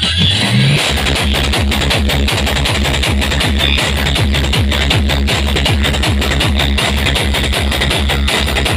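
Loud electronic dance music played through a DJ sound system. A short rising sweep leads into a heavy, steady bass beat about a second in.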